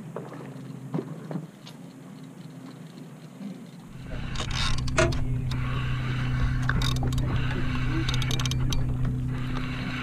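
A boat's engine giving a steady low drone, joined about four seconds in by a louder rumble and hiss of wind on the microphone, with a few sharp knocks.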